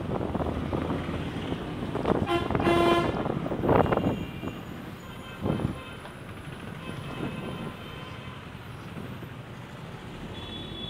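Road traffic heard from a moving vehicle: steady engine and road rumble, with a vehicle horn tooting twice in quick succession a little over two seconds in. Shorter, fainter horn toots follow later.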